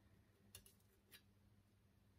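Near silence: room tone with a faint low hum and two faint clicks, about half a second and just over a second in.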